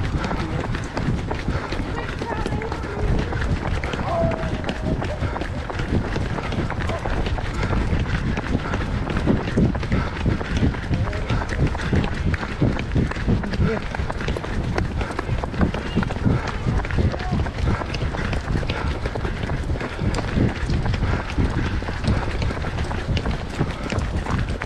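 Footfalls of a group of runners on a tarmac path, a steady rhythm of steps throughout, with indistinct voices mixed in.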